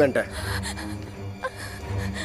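A short, loud vocal outburst from a person right at the start, over background music with a steady low drone; a few brief vocal sounds follow.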